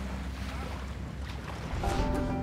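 Steady low engine rumble on open water, with wind buffeting the microphone and water noise over it.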